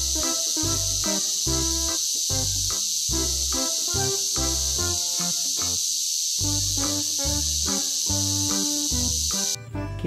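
Cicada song: a continuous high-pitched buzz that cuts off suddenly near the end, heard over background music with a steady beat.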